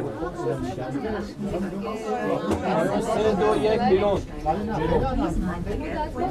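Overlapping chatter of several people talking at once, with no other sound standing out.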